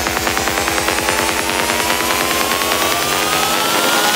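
Psytrance track in a build-up: a buzzing synth pulses rapidly under a steadily rising sweep. The deep bass drops out about three and a half seconds in.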